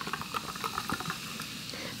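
Carbonated sparkling water poured from a can into a glass with no ice, fizzing: a steady soft hiss made up of many tiny bubbles popping.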